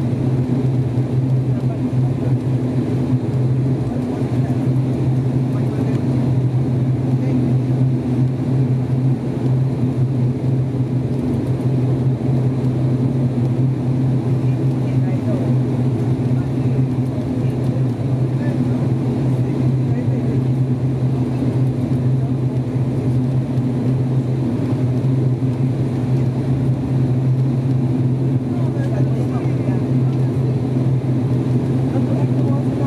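The Pratt & Whitney PW127 turboprop engines of an ATR 42-600 running at taxi power, heard inside the cabin as a steady, low propeller drone.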